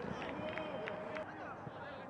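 Footballers shouting and calling to each other on the pitch, with a few sharp knocks of the ball being struck. With the stands empty there is no crowd noise, so the players' voices and the ball carry on their own.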